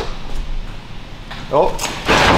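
A few light clicks and knocks from the open steel door of a Fox-body Mustang being handled, with a sharper click near the end.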